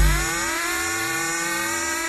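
Techno track in a beatless breakdown: the kick drum drops out just after the start, leaving a synthesizer sweep of gliding tones over a steady held note.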